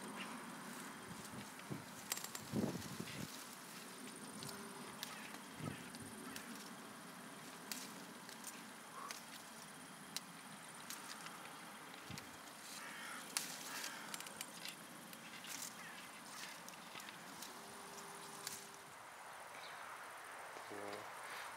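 Faint rustling of red currant leaves and twigs as berries are picked by hand, with scattered soft clicks and snaps.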